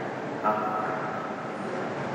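A man's short questioning "Hả?" about half a second in, over a steady haze of room noise.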